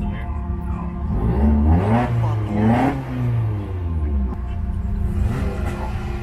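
Car engine revving up and down twice in quick succession, heard from inside a car, then settling to a steady run.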